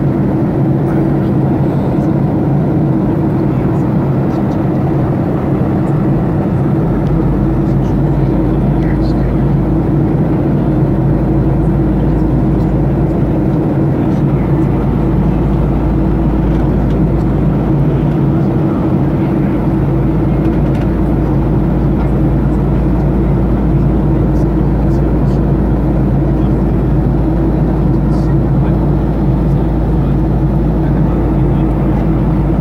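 Aircraft cabin noise at cruise: a steady drone of engines and rushing air with a constant hum. The low rumble grows stronger about seven seconds in.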